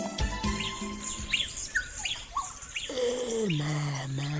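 Birds chirping in short repeated calls, a scene-setting ambience that follows the end of a music cue. Near the end a lower voice-like tone falls in pitch and then holds.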